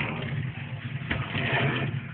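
A steady low mechanical hum with a couple of short clicks about a second in.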